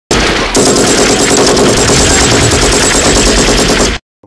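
Loud, sustained automatic gunfire: one unbroken stream of rapid shots, growing denser about half a second in, that cuts off suddenly at the end.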